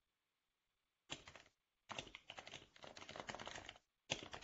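Computer keyboard typing in rapid keystrokes: a short burst about a second in, then a longer run of typing from about two seconds until shortly before the end.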